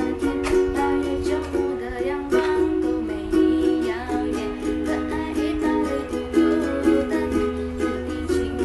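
Ukulele strummed in a steady rhythm, with a young woman singing a Mandarin pop song over it, in a small room.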